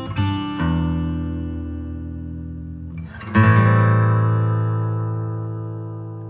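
Background music: acoustic guitar chords strummed and left to ring, with a fresh strum just after the start and another about three seconds in, each fading slowly.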